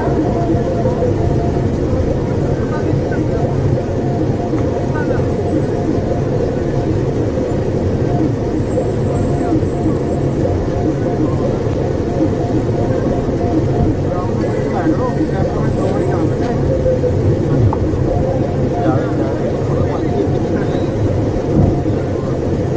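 Steady road and engine noise of a moving vehicle, with indistinct voices in the background.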